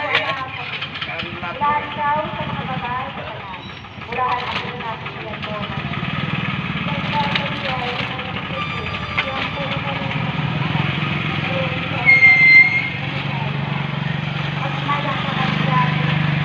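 Motorcycle tricycle engine running as it approaches, its low steady sound building through the second half and loudest at the end as it passes close by. A short high beep sounds about twelve seconds in, over voices in the background early on.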